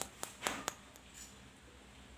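A few sharp, short clicks in the first second as a dried bamboo piece is handled and turned in the fingers.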